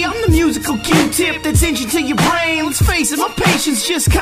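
Hip hop music: rapped vocals over a beat with deep bass kicks and sharp drum hits. The bass drops out about three seconds in.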